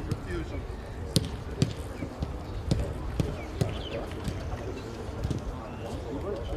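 Footballs being struck in a short passing drill: several sharp kicks at irregular intervals, over players calling to each other in the background.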